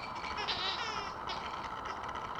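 Airedale terrier puppy whining: a few faint, wavering high-pitched whines.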